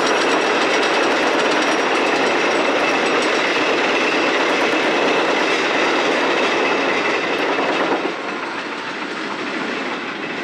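Rail cars rolling on track: a loud, steady clattering rumble that eases a little about eight seconds in.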